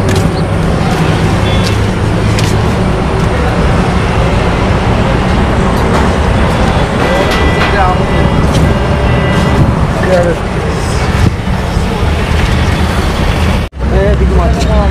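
Motorcycle engine idling steadily close by, a low even rumble, with people talking in the background. It cuts off for a moment near the end.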